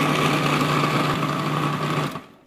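Electric food processor running steadily, its motor hum and blade whine even throughout, as it chops onions, parsley and dill to a fine mince.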